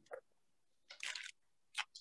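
A few faint, brief handling noises, about a second apart, as a tiny super glue tube is turned in the fingers and its red cap twisted.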